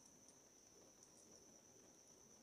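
Near silence, with a faint, steady, high-pitched tone.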